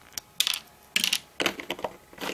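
Plastic Lego bricks clicking and clattering against each other and the baseplate as they are handled, in a quick run of sharp clicks and short rattles.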